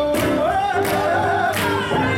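Swing jazz with a singer over a steady beat.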